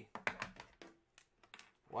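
A quick run of light clicks and taps from hands handling a hard plastic display case, followed by a few faint ticks.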